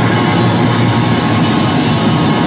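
Hardcore band playing live: a dense, sustained wall of distorted guitar and bass with no cymbal crashes in it.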